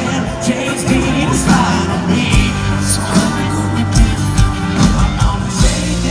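Live rock band playing loud through a concert PA, drums and guitars, with a guest singer's amplified voice singing over it.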